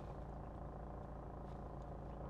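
Steady low hum inside a Volkswagen Transporter van's cab, from the van's engine idling.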